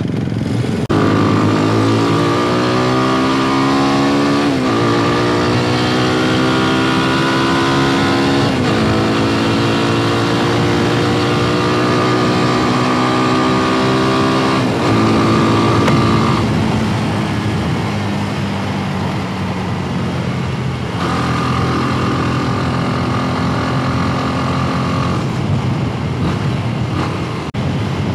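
Motorstar Z200X motorcycle engine pulling away from a stop and accelerating through the gears: the pitch climbs in each gear and drops back at upshifts about 4.5, 8.5 and 15 seconds in, then settles to a steady cruise. Wind rushes over the microphone throughout.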